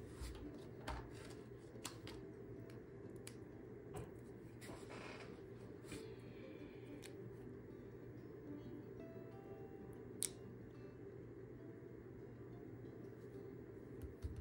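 Faint rustling and light clicks of paper and sticker backing being handled as a sticker is fixed with foam adhesive squares and pressed onto a scrapbook page, with one sharper click about ten seconds in.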